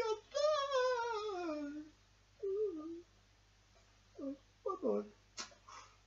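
A man's high-pitched put-on voice acting out a puppet crying: one long wail that falls in pitch, then a few shorter whimpering sobs and a sniff.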